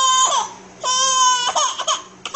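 A baby crying: two drawn-out wails of nearly a second each, steady in pitch, then a few shorter broken cries near the end.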